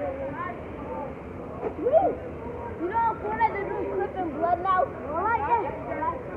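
Several young voices shouting and calling out over one another during play, with no clear words; the calls come thicker and louder from about two seconds in.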